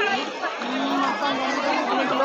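Crowd chatter: many people talking at once in overlapping voices.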